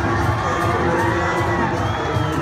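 Stadium crowd cheering, with children's long high shouts rising above it, over loud dance music.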